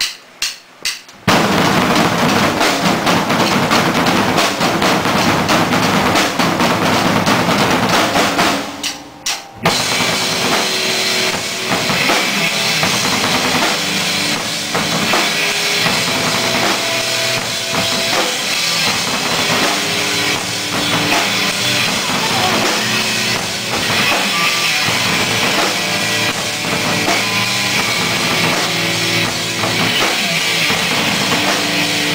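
Several drum kits with double bass drums playing fast together in heavy-metal style, opening with a few separate hits. After a short break about nine seconds in, electric guitars come in with the drums for full-band heavy metal.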